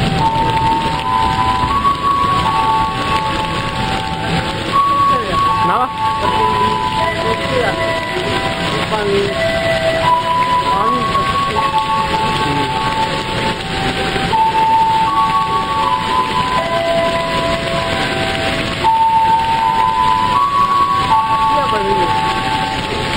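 Heavy rain pouring steadily on the station roof and platform, a dense, even rushing. Over it a simple tune of clear single notes plays throughout.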